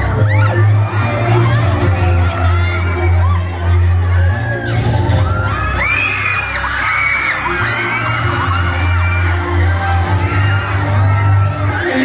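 Loud pop dance music with a heavy bass line, and a crowd screaming and shouting excitedly over it. The bass drops out briefly about four seconds in and again around seven.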